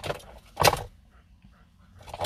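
Two short bursts of handling noise, about half a second apart, as something small is moved about close by.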